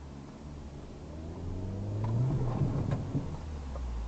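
Car engine accelerating from a near stop, heard from inside the cabin, rising in pitch over the first couple of seconds and loudest about halfway through.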